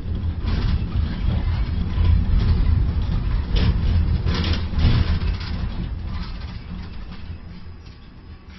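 Ship-to-shore gantry crane machinery making a low rumble as the spreader hoists a container out of the ship's hold and carries it toward the quay, with a few brief clanks. The rumble fades over the last couple of seconds.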